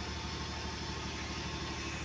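Steady hum of a running telecom power cabinet, its Huawei rectifier modules and their cooling fans: an even low drone with a faint steady whine above it.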